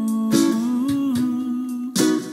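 A man singing one long wordless note over strummed Lanikai ukulele chords; the note lifts slightly about half a second in and settles back, with a fresh strum at the start and end.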